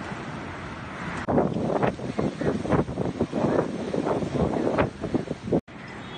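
Wind buffeting a phone microphone, starting as a steady rush and turning into irregular hard gusts after about a second, with sea surf beneath. It cuts off abruptly near the end and gives way to a quieter steady wind.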